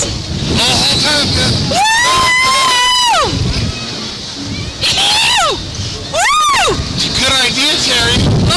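Riders on an ejection-seat ride screaming: one long, high, wavering scream starting about two seconds in, then two shorter screams that rise and fall near the middle and towards the end, over a rumble of wind on the microphone.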